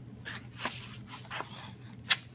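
Point of a pair of scissors being pressed and twisted into card stock to bore a hole, giving a series of short crunches and scrapes of paper.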